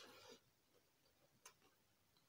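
Quiet mouth sounds of hand-eating: a short slurp or suck as a handful of rice goes into the mouth, then a single sharp click about one and a half seconds in while chewing.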